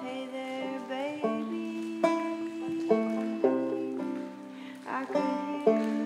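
Solo banjo picked in a ringing instrumental passage, separate plucked notes every half second or so, each ringing on and fading.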